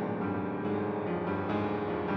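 Piano music accompanying the silent film, with dense chords and notes that change several times a second.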